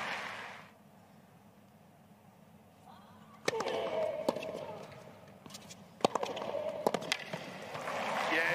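Tennis ball struck with rackets in a rally on a hard court. A sharp serve strike comes about three and a half seconds in, followed by several more hits and bounces, over a low crowd murmur.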